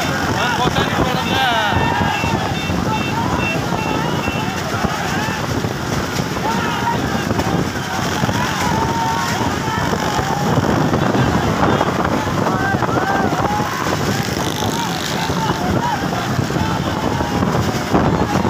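Wind buffeting the microphone over a steady rush of road and engine noise from a moving donkey cart with motorcycles riding alongside, with people shouting throughout.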